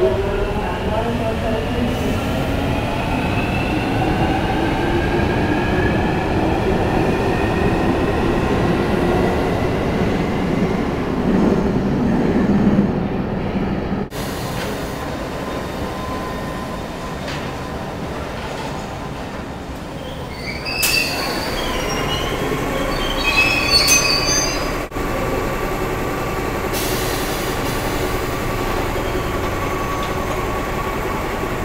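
London Underground trains. First a Jubilee line train moves behind platform screen doors, its traction motors giving a whine that slowly rises in pitch. After a cut, another Underground train runs past with high wheel squeals about 21 to 24 seconds in, and near the end a steady hum follows.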